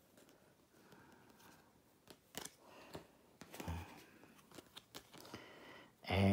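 Faint handling of playing cards: soft clicks and snaps as cards are sorted and fanned in the hand, scattered through the middle. A brief low vocal murmur comes a little over halfway in.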